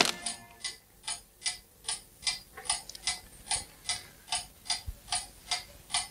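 A clock ticking steadily, about two and a half ticks a second.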